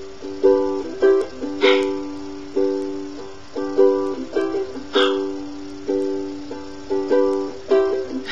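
Ukulele strummed in a steady rhythm with no singing, its chords ringing between strokes. A few strokes are struck harder than the rest.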